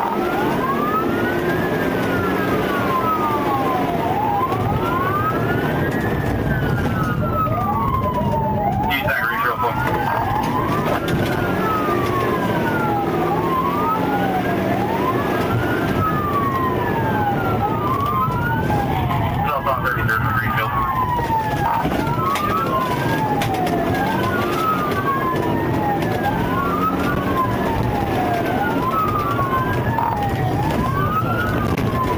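Police car sirens wailing in a slow rise and fall, about one sweep every four seconds, with two sirens overlapping out of step. Engine and road noise of the fast-moving cruiser run beneath.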